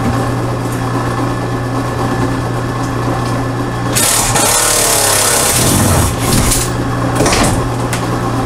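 A power driver runs for about two seconds from about halfway, backing out a sheet metal screw, its whine falling in pitch as it goes, with a few shorter bursts after. A steady low hum sits underneath throughout.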